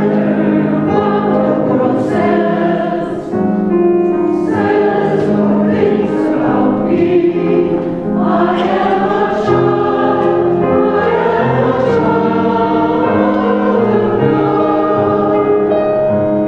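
Mixed church choir of men's and women's voices singing an anthem in parts, with sustained, steady phrases.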